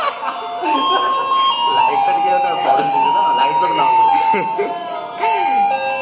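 Electronic musical doorbell chime inside an Arduino prank box, set off by light on its sensor as the box is opened, playing a tune of steady electronic notes stepping up and down.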